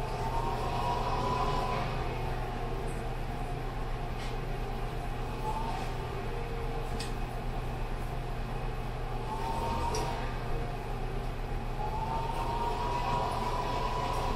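Steady low kitchen hum with a few faint clinks of a serving spoon against a ceramic bowl as mac and cheese is dished up from a steel pot.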